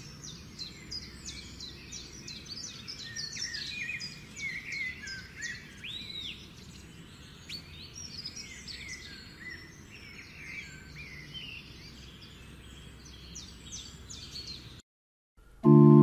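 Birds chirping and singing, a dense run of short quick calls with one rising-and-falling whistle about six seconds in, over a faint steady background hiss. The birdsong cuts off near the end and, after a brief silence, louder guitar music starts.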